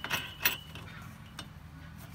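Small metal clicks and clinks of steel washers and a nut being fitted by hand onto a harness mounting bolt: a few sharp clicks, the loudest about half a second in.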